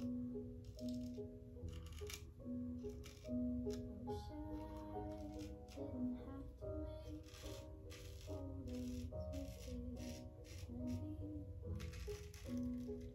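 Background music, a melody of held notes, with the short, repeated scraping strokes of a straight razor cutting through lathered stubble on the neck.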